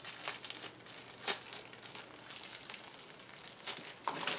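Protective packaging wrap crinkling and rustling as it is worked off a small object by hand, an irregular run of crackles.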